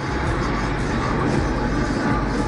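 Steady road and engine rumble inside the cabin of a moving car.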